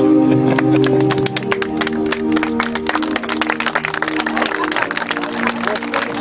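Music with long held notes, joined about half a second in by a crowd of guests clapping steadily as the newlyweds walk up the aisle.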